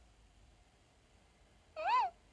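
Quiet room tone, then near the end one short, high-pitched vocal call that rises and falls in pitch.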